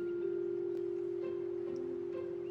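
A steady, held chime-like note from the background music score, with a second, lower note coming in near the end.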